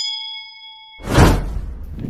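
Subscribe-animation sound effects: a notification-bell ding of several ringing tones fading out over about a second, then a loud whoosh transition.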